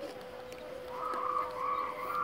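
A bird calling: three drawn-out, fairly even-pitched calls in a row, starting about a second in.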